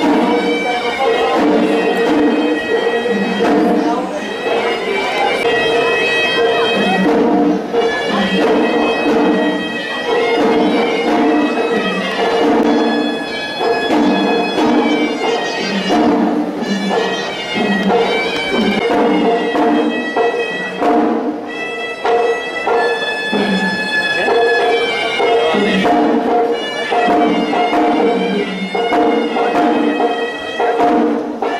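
Sri Lankan hevisi temple music: a horanewa, a double-reed pipe, plays a continuous winding melody over a held low tone, with drum strokes underneath.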